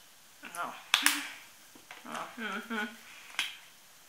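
A woman's short wordless vocal sounds, hums and murmurs, with sharp clicks about a second in and again near the end as she handles plastic lotion bottles.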